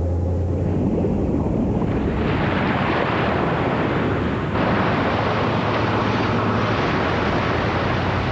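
Rushing, surf-like water noise over a steady low hum. It swells about two seconds in and jumps louder about halfway through.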